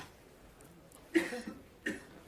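A person coughs about a second in, with a second short burst just before the end.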